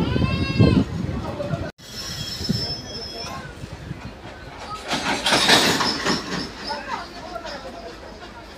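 Running noise of a DEMU passenger train heard from its open door at speed: a steady rumble and wheel clatter, with a thin high wheel squeal a couple of times and a louder swell of rail noise about five seconds in.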